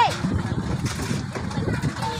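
Indistinct voices of several people talking at once over a low, uneven rumble.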